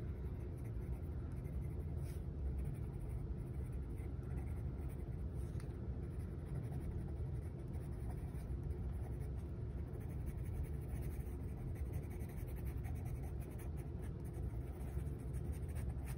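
Green colored pencil scribbling on sketchbook paper, a steady soft scratching as small tree shapes are filled in along a distant tree line.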